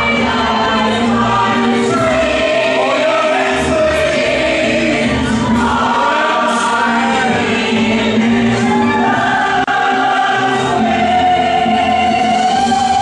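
A stage cast singing together in chorus over instrumental accompaniment, in a live musical parody number.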